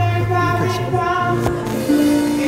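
Live church music starting up: long held bass notes under a high, sustained melody line.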